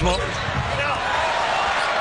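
Crowd noise in a basketball arena during live play, with the ball and players' shoes on the hardwood court.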